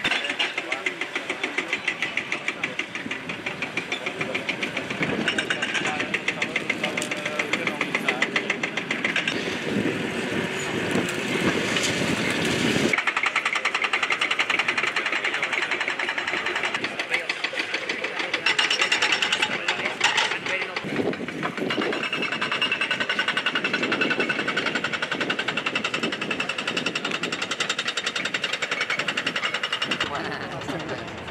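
Diesel engine of a truck-mounted grapple crane running with a rapid, even knock, mixed with indistinct voices.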